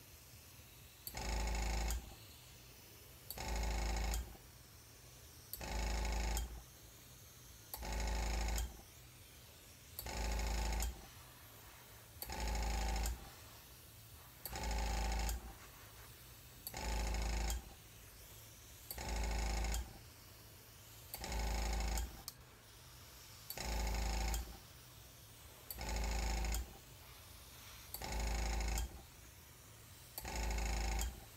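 Small airbrush compressor switching on for just under a second about every two seconds, each run starting with a click, as the airbrush draws air. A steady faint hiss of air from the airbrush carries on between runs.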